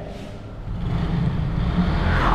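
A low, steady rumble that grows louder toward the end.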